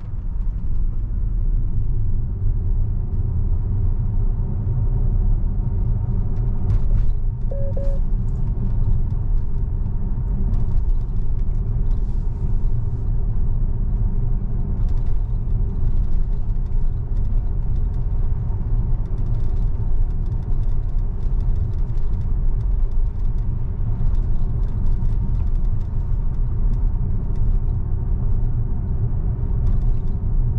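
Steady low road and tyre rumble inside the cabin of a moving Tesla electric car at around 35 mph, with no engine note.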